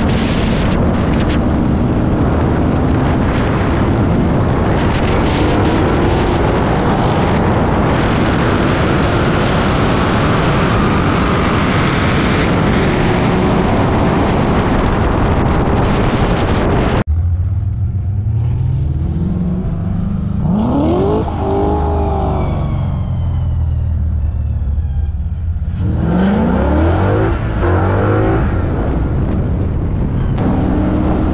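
A manual-transmission V8 at full throttle in a highway roll race, its note climbing through the gears under heavy wind rush. About seventeen seconds in, the throttle closes abruptly and the wind noise falls away. The engine then runs lower as the car slows, with a couple of brief rising rev blips.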